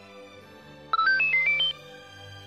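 A quick electronic jingle of about seven short beeps at jumping pitches, lasting under a second and starting about a second in, over faint sustained background music.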